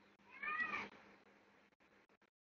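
A single short high-pitched animal call, about half a second long, that rises and then falls in pitch, a little way in.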